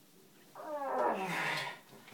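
A person's drawn-out moan of pain, falling in pitch, starting about half a second in and lasting just over a second, as a wire of the Ilizarov frame is worked out of the leg.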